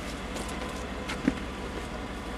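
Faint handling noise in a pickup truck cab, with one short thump a little past a second in as the fold-down middle front seat is worked.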